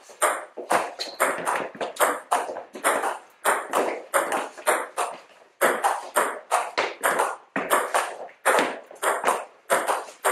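Table tennis rally: the celluloid ball cracking off rubber bats and bouncing on the table, several sharp clicks a second, echoing in the hall. There is a short break about five seconds in, then the rally rhythm resumes.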